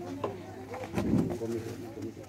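Indistinct voices of people talking, with a short, louder low sound about a second in.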